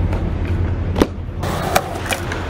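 Skateboard wheels rolling on concrete, with a sharp clack of the board against the concrete about a second in and a lighter one near the end.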